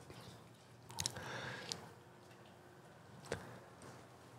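Quiet room with faint handling noises: a short click about a second in, followed by a brief rustle, and another click a little after three seconds.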